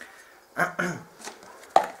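A white ceramic mug being handled and put down, with a few knocks and one sharp knock near the end.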